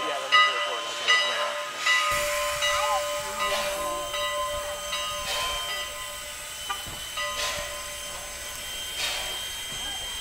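Canadian National 89, a 2-6-0 steam locomotive, hissing steam with a steady whine under it, and a series of soft exhaust whooshes about a second apart.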